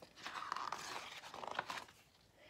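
Paper rustling and crinkling as a picture-book page is turned by hand, a run of small crackles lasting most of two seconds.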